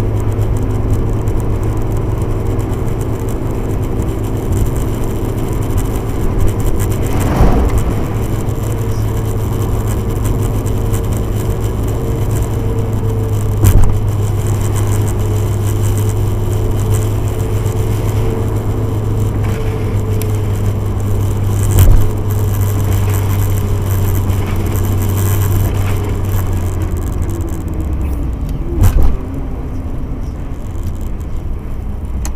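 Car's engine and road noise heard from inside the cabin: a steady low hum with tyre noise, broken by a few sharp knocks. Near the end the pitch falls as the car slows down.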